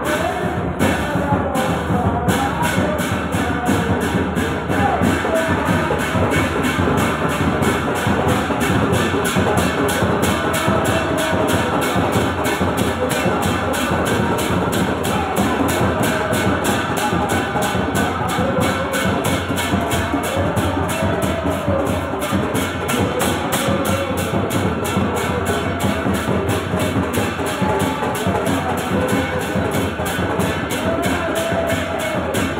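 Crowd singing devotional chant (kirtan) to percussion. The beat keeps up a fast, steady pulse that quickens about two seconds in.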